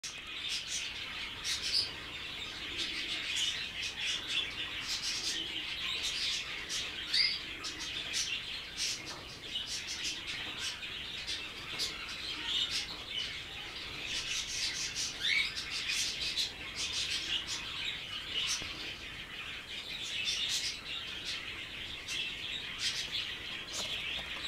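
Young budgerigar chattering and warbling without pause: a stream of soft chirps, short rising whistles and sharp clicks.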